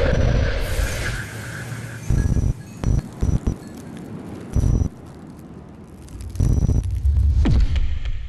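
Electronic TV bumper music. It opens on a loud swell with a whoosh, then plays short, heavy bass hits in an uneven rhythm, with a falling sweep near the end.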